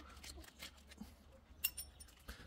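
Faint metallic clinks of a socket and extension on a transmission drain plug as it is threaded in by hand. A short cluster of light, ringing clinks comes near the end, over a low steady hum.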